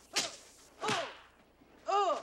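Kung-fu film fight sounds: two short, sharp swishes that fall in pitch, as a fighter lunges and throws strikes, then a loud fighter's shout beginning near the end.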